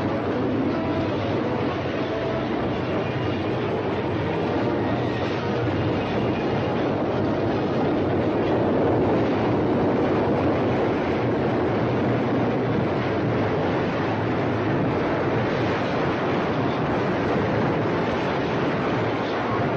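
A train running, a steady rolling noise that neither stops nor breaks.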